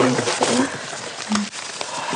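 Paper letters and envelopes rustling and crackling as they are shuffled and handled, with short bits of voice.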